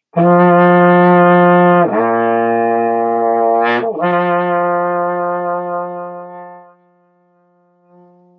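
Trombone in first position playing a lip slur as one long tone, tongued only at the start: middle F, sliding down to low B flat about two seconds in, and back up to F about four seconds in. The final F is held and fades out just before seven seconds.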